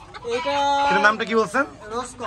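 Bantam rooster crowing, with a held note about half a second in that then falls away, among clucking chickens; a man's voice speaks briefly.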